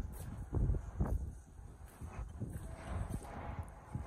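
Footsteps crunching on a gravel yard: a few uneven steps while walking.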